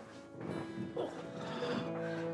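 Soft sustained background music, with a man's pained groans as he strains to sit up in bed.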